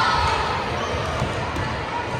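Echoing gymnasium crowd noise during a volleyball rally: spectators' voices, a drawn-out call trailing off in the first half second, and dull thuds of the ball and players on the hardwood floor.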